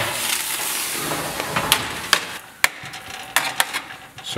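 Hot metal sheet pan of roasted tomatoes and tomatillos sizzling with a steady hiss as it comes out of the oven. The hiss fades about halfway through, and a handful of sharp metallic clicks and knocks follow as the pan and metal tongs touch.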